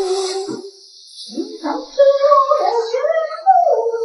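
A woman humming a little tune, the melody wandering up and down with a break of about a second near the start.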